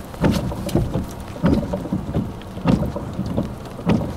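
Rain from a thunderstorm, with drops striking close to the microphone in irregular sharp hits over a low, gusty rumble.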